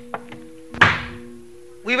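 A single loud wooden knock about a second in: a wayang dalang's cempala striking the wooden puppet chest (kotak) between lines of dialogue. Soft, sustained gamelan notes ring underneath, and the dalang's voice comes back at the very end.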